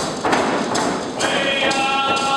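Group of Ts'msyen singers singing together in unison over repeated strokes of a Northwest Coast hand drum. The voices come in strongly just over a second in, with drumbeats throughout.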